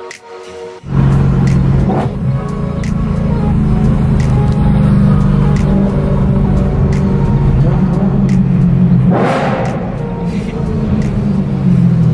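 Loud steady drone of a car's engine and road noise heard inside the cabin while driving, starting suddenly about a second in, with music playing over it. The drone drops in pitch near the end as the car slows, and a brief rushing swell comes about nine seconds in.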